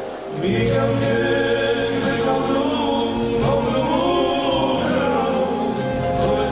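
Live rabiz-style Armenian pop: a male singer with a band. After a brief lull the full band comes in about half a second in, and the sung line bends up and down in pitch.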